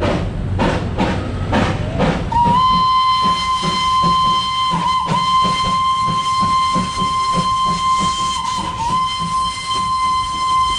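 Darjeeling Himalayan Railway steam locomotive whistle: one long, high, steady blast starting about two seconds in, dipping briefly twice, over a rapid rhythmic pulsing and steam hiss.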